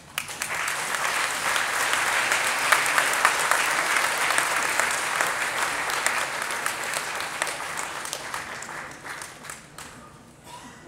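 Audience applause: many people clapping together, swelling up within the first second, holding steady, then dying away near the end.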